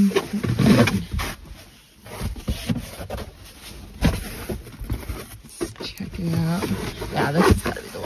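Moulded rubber floor liners being handled and pressed into place in a car's footwell: a run of knocks, scrapes and clicks. Near the end come a couple of short wordless vocal sounds of effort.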